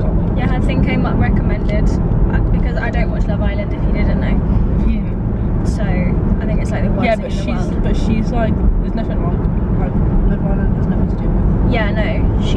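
Road and engine noise inside a moving car's cabin: a steady low rumble that runs under the conversation.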